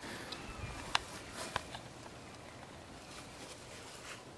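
Quiet outdoor background with faint bird chirps and two short sharp clicks, about one and one and a half seconds in, from handling and movement of the camera while it is carried into the minivan.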